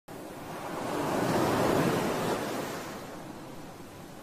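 Sea surf on a beach: a wave breaks and washes in, swelling to its loudest about a second and a half in, then fading away.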